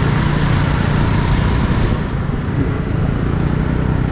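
Motorcycle ride through city traffic: the engine runs steadily under a rush of wind and road noise, and the high hiss eases off about halfway through.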